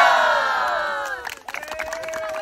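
A group of students shouting together in one long cheer that falls in pitch and fades out about a second and a half in. A few sharp clicks and a steady tone follow near the end.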